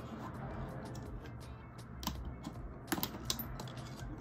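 Small clicks and handling sounds of fingers working a push-down metal clasp on a leather bag's front pocket flap until it opens, with a few sharper clicks in the second half.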